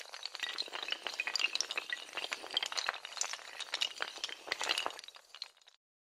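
Sound effect of many hard tiles toppling like dominoes: a dense, rapid clatter of small clicks that thins out and then stops abruptly near the end.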